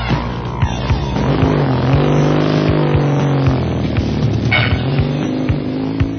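A motor vehicle's engine sound, its pitch rising and then falling a couple of seconds in, mixed into a music recording.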